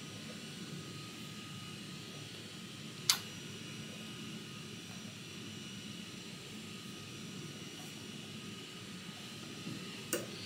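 Steady faint hum and hiss of a room's ventilation air, with one sharp click about three seconds in.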